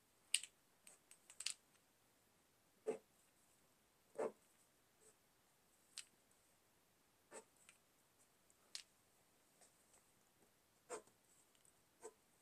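Near silence broken by faint, scattered taps and short scratchy strokes of a Posca paint pen's tip on a canvas panel, about eight of them spread over the dozen seconds.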